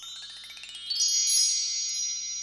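Chime sound effect: a quick rising run of bell-like notes over about a second, which then ring on together, high and steady.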